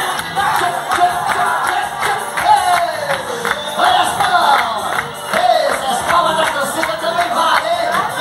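Festa junina quadrilha dance music with a singing voice and a steady beat, over the noise of the crowd.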